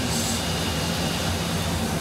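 Steady drone of machine-shop machinery and ventilation: a low, even hum under a constant hiss.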